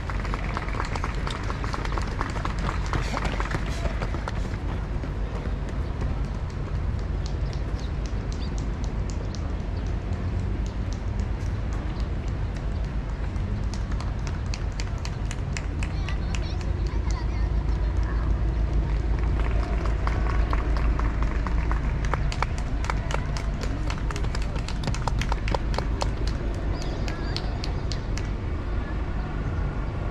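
Running footsteps on an asphalt road as marathon runners pass in ones and twos, a quick patter of about three footfalls a second that comes and goes, over a background of spectators' voices and a low rumble.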